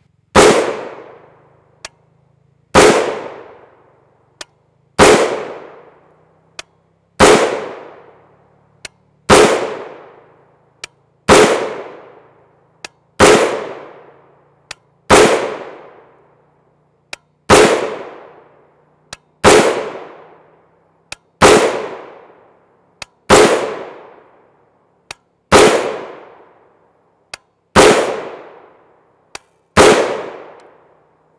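A 7.5-inch-barrelled AR-15 firing 5.56 NATO M193 55-grain FMJ rounds: about fifteen single shots, evenly paced roughly two seconds apart, each a sharp report with a ringing tail.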